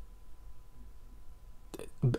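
Quiet room tone: a low steady hum with a faint thin steady tone above it, and a short mouth sound near the end just before speech resumes.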